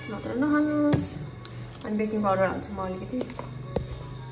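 Several sharp clinks of a metal spoon against a steel mixing bowl of chocolate cake batter, over background music with a singing voice.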